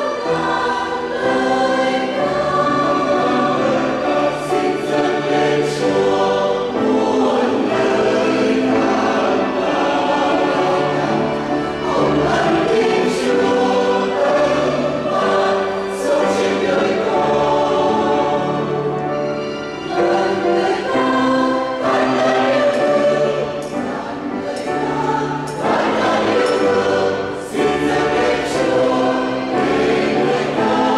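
Large mixed choir of women and men singing a church hymn together, with sustained, shifting chords that continue steadily.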